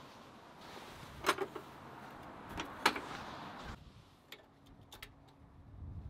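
Quiet handling sounds at an electric kiln: a faint rushing noise with a few sharp knocks in the first half, then a few light clicks as its controls are set.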